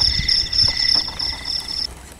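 Insects chirping in a steady, rapidly pulsing high trill, with low knocks and bumps beneath it. The chirping cuts off near the end.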